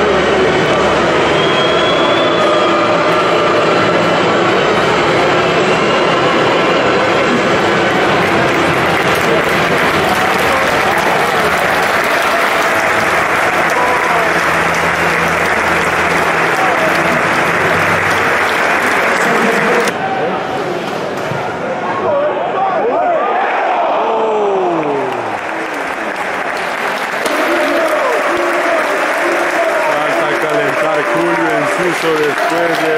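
Football stadium crowd applauding and chanting, a loud, dense mass of clapping and voices. The sound changes abruptly about two-thirds of the way through, where a few single voices shouting nearby stand out from the crowd.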